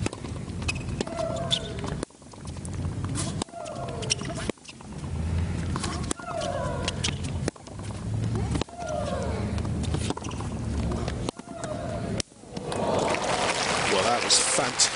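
Tennis baseline rally: the ball is struck over and over, and a player lets out a long, falling shriek on her shots, about every two to three seconds, with several abrupt cuts in the sound. Near the end the crowd applauds.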